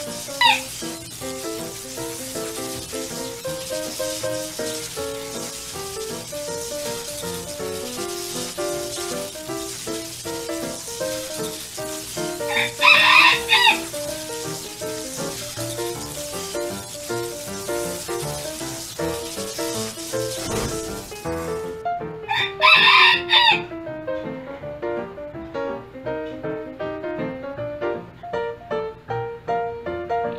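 Background music throughout, with a rooster crowing twice, about halfway through and again some ten seconds later.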